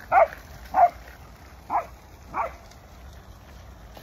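A dog barking four times in the first two and a half seconds, with the later barks fainter.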